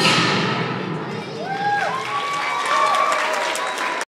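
Dance music dies away, followed by an audience clapping and voices calling out and cheering.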